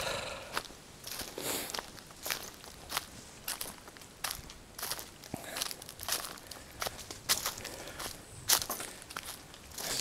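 Footsteps of a person walking down a jungle trail at a steady pace, about three steps every two seconds, each step a short, sharp scuff on the ground.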